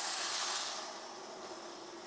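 Water poured into a hot frying pan of toasted rice and beans, hissing sharply as it hits the hot pan. The hiss fades about a second in to a quieter, steady sizzle.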